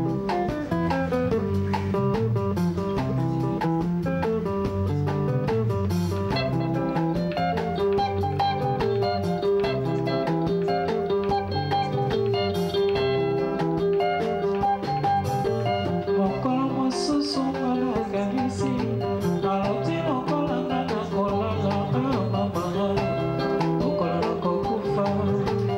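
Congolese rumba music led by interlocking guitar lines over a steady, repeating bass line.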